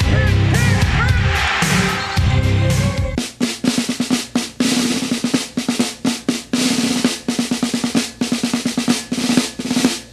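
Music with a heavy bass line gives way about three seconds in to rapid snare drum strokes and rolls. The drumming cuts off suddenly at the end.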